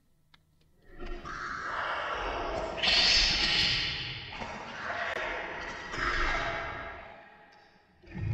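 A spoken voice recording played backwards after being slowed, pitched down an octave and drenched in reverb, so that the words are unintelligible and the reversed reverb tails swell up into each phrase. It comes in about a second in, rises and falls in several surges, and dies away near the end.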